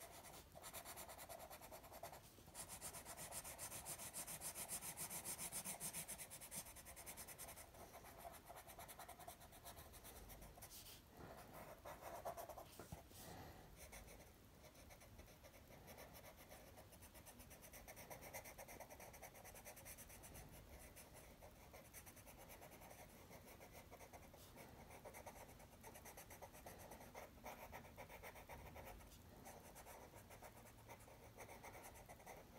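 Faint scratching of a watercolour pencil shading on paper in quick back-and-forth strokes, a little louder between about two and seven seconds in.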